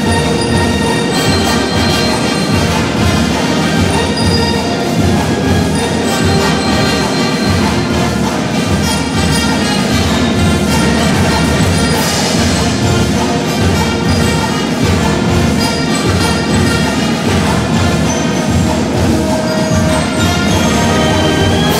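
School marching band of brass and percussion, with sousaphones, playing a tune over a steady beat.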